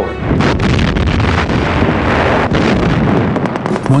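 Battle sound effects: a continuous rumble of explosions with several sharp bangs, over music.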